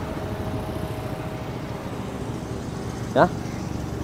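Steady hum of car engines running close by, with no sudden events.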